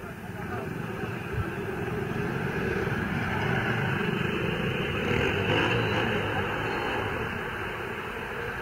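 Car engines running as vehicles roll slowly past at low speed, with people's voices talking over them; the noise swells toward the middle and eases near the end.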